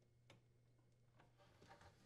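Near silence, with a faint hum, one faint click early and a few faint clicks near the end as a plastic wire nut is twisted onto the wires by gloved hands.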